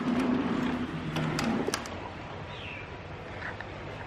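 Outdoor ambience with birds calling, including a short falling chirp about halfway through, over a low steady hum. A few sharp clicks come in the first couple of seconds.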